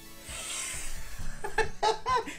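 A soft hiss, the fizzing of a self-inflating novelty toy's water-activated pouches starting to inflate, for about a second, then a man laughing briefly. Background music runs underneath.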